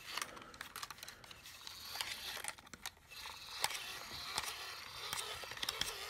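Hand-crank dynamo of a crank-charged solar flashlight being wound by hand to charge its battery: a continuous gear whir with many irregular clicks and ticks.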